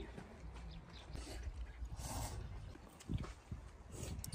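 Eating noises from people eating out of bowls with chopsticks: a few short mouth sounds, the clearest about three seconds in, over a low steady rumble.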